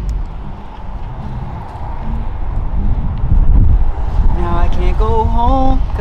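Wind buffeting a handheld camera's microphone: an uneven low rumble that swells about halfway through. A voice comes in near the end.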